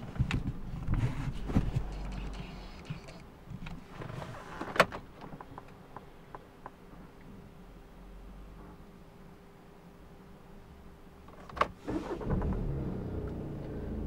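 Audi A3's engine switched off and its low running sound dying away, heard from inside the cabin, then a few clicks. Near the end the engine is cranked and starts in a sudden burst, settling into a steady idle.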